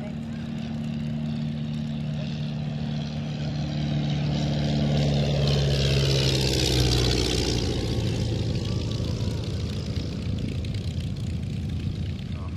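Desoutter I cabin monoplane's 115 hp Cirrus Hermes engine and propeller droning through a low flypast. It grows louder to a peak about six to seven seconds in, then drops in pitch as the aircraft passes and draws away.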